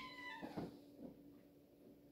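A cat meows once: a short call falling slightly in pitch, followed by a soft thump about half a second in.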